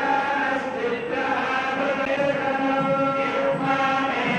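A group of priests chanting Vedic mantras in unison, continuous and steady, on long held notes.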